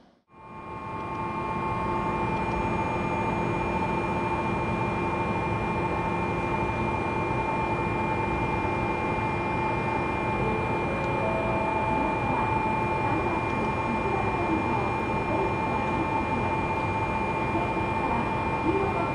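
Steady interior noise of a Senboku Rapid Railway electric commuter train car: a constant hum and rush with several fixed high whining tones from the car's air conditioning and electrical equipment, fading in over the first couple of seconds.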